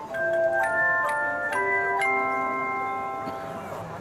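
A handchime ensemble of aluminium-alloy handchimes playing a run of struck chords, one about every half second, then a last chord at about two seconds that is left to ring and fades away.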